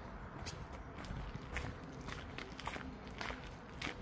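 Footsteps of someone walking at a steady pace, a little under two steps a second.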